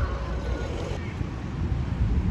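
Outdoor ambience at a football pitch: a steady low rumble of wind on the microphone, with distant voices of the players calling.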